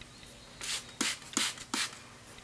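Hand spray bottle squirting water onto a Japanese waterstone: four short sprays, the last three about a third of a second apart.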